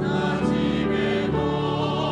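Mixed church choir singing a hymn in Korean, with held chords that shift a couple of times and a low bass line beneath.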